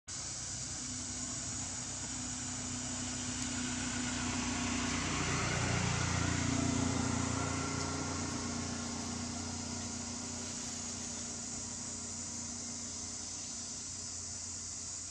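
A low engine hum, like a passing motor vehicle, that swells to its loudest about six to seven seconds in and then eases off, over a steady high drone of insects.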